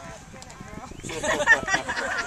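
Sideline spectators' voices, indistinct chatter that grows louder about a second in.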